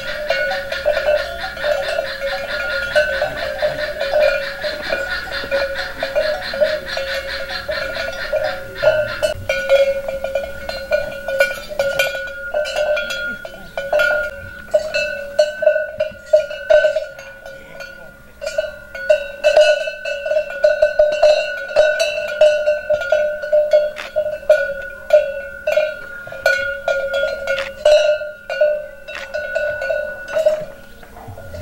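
Cattle bell clanking as the animal wearing it moves: one ringing metal note struck again and again at an uneven pace, with the separate clanks sharper in the second half.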